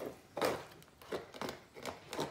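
Wet algae being scraped and peeled by hand off a plastic-mesh algae turf scrubber screen: a few short scraping, rustling strokes.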